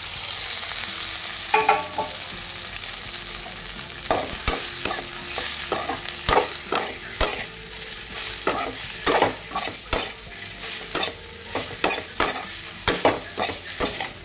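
Cut idli pieces frying in a hot metal kadai, sizzling while a perforated metal skimmer stirs them, with repeated scrapes and clinks of the ladle against the pan. A short metallic ring sounds about a second and a half in, as the bowl is emptied into the pan.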